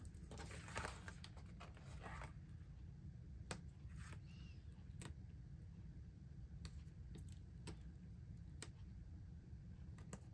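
Faint, scattered light taps and rustles of small paper letter stickers being pressed down onto a scrapbook page, a soft click every second or so over a low room hum.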